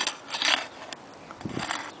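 A flat metal hand tool clinking and scraping against asphalt roof shingles: two short scrapes in the first half-second, then a few fainter clicks.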